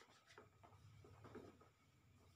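Near silence: faint, soft rubbing of hands over skin during a leg massage, over a low steady hum.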